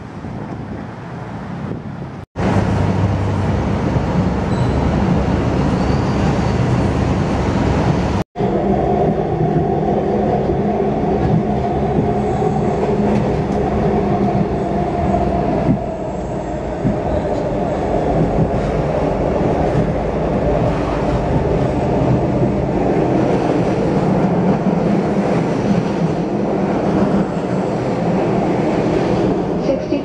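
Rapid-transit train running on an elevated line, heard from inside the car: a steady rumble of wheels on rail with a humming drone. It opens with about two seconds of street traffic, and the sound cuts out briefly twice.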